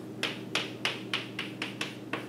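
Chalk tapping against a chalkboard in a row of about eight short, evenly spaced strokes, three to four a second: the dashes of a dotted line being drawn.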